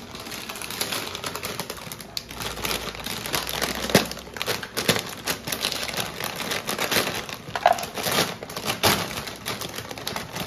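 Clear plastic bag of dried noodles crinkling and crackling as it is handled and slit open with a knife: a steady run of irregular sharp crackles and clicks.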